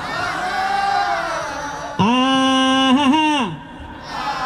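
Call-and-response singing of a wordless 'ah': for the first two seconds the audience sings the line back together, then about two seconds in the male lead singer holds one long 'ah' that wavers briefly and slides down and fades near the end.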